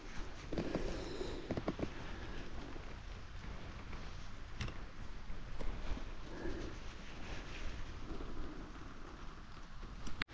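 Footsteps and rustling in dry leaf litter on a forest floor, with a sharp click about four and a half seconds in.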